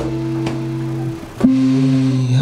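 Guitar playing slow single low notes that each ring out, with a new, higher note picked about a second and a half in.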